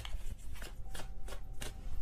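A deck of tarot cards being shuffled by hand: a string of short, irregular card slaps and rustles, a few a second.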